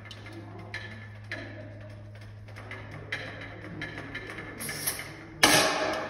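Irregular sharp clicks and knocks, about eight of them, over a steady low hum. About five and a half seconds in comes one much louder sudden burst with a hiss that fades over about half a second.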